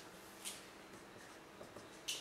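Dry-erase marker writing on a whiteboard: faint short scratching strokes, the clearest about half a second in.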